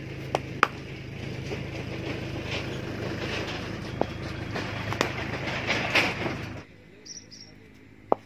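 Tractor engine running as it passes with a trailer, a steady drone that swells a little and then cuts off abruptly near the end, with several sharp knocks over it.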